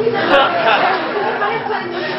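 Several voices talking over one another, with no single voice clear.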